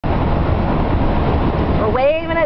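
Steady road and engine noise inside a car's cabin while driving at highway speed, a constant low rumble and hiss. A voice starts up just before the end.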